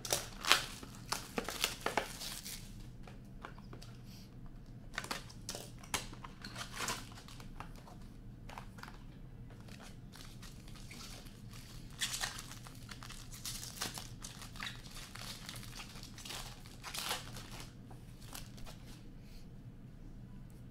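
Plastic card-pack wrapping crinkling and tearing as a box of hockey cards is opened, in irregular bursts of crackle, densest in the first two seconds and again around the middle.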